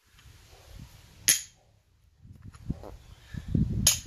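Double-sided neodymium fishing magnet snapping against a steel claw hammer: two sharp metal clacks, about a second in and again near the end, with low handling rumble in between as the magnet is worked along the hammer.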